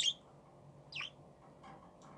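Budgerigar chirping: two short, high chirps about a second apart, the second falling in pitch, then a fainter call near the end.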